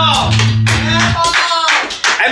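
Live freestyle band jam: drum kit and bass guitar playing under a wordless, bending vocal line. The bass notes drop out a little past halfway.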